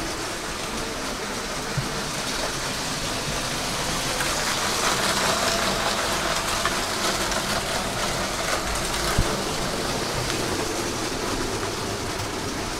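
Motorised Lego City passenger train with two linked powered cars running on plastic track: a steady whirring rattle of motors and wheels that grows louder through the middle as it passes close, with a few small clicks.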